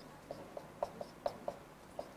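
A quick series of light, irregular taps or clicks, about seven in two seconds, over quiet room tone.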